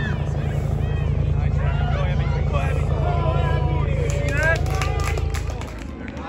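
A motor vehicle engine running close by: a low, pulsing rumble that swells in, holds for about five seconds and fades away near the end. Voices call out over it.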